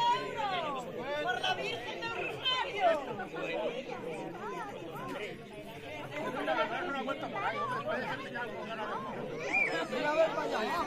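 Indistinct chatter of a crowd, many people talking at once.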